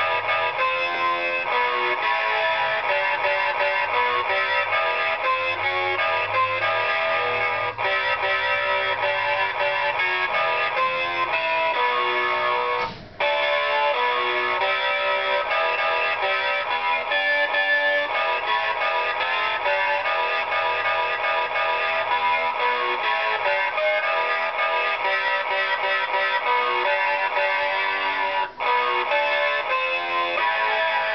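Distorted electric-guitar rock music from a toy electric guitar, playing steadily with brief breaks about 13 seconds in and again near the end.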